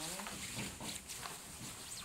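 Cloth and bag rustling as a pink fabric cape is pulled out of a bag and shaken open, a run of short, irregular scuffs.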